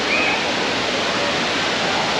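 Steady rush of flowing, churning water from the park's wading-pool water features, with a brief faint high voice about the start.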